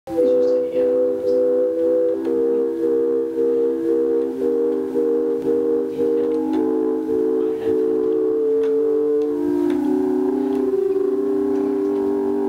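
Electronic keyboard playing sustained organ-like chords, struck again in a steady pulse a few times a second and moving to a new chord every two seconds or so.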